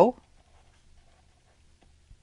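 The tail of a spoken word, then near silence with faint scratches and light ticks of a stylus writing on a pen tablet.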